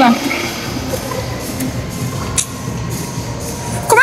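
Busy shopping-mall background: a murmur of voices with faint background music over a low rumble.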